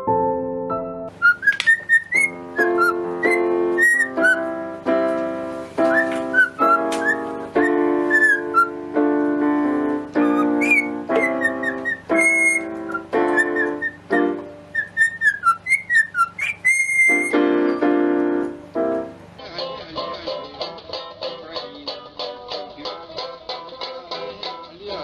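A cockatiel whistling a tune in short gliding phrases along with piano notes. Near the end this gives way to a banjo being picked in quick, even notes.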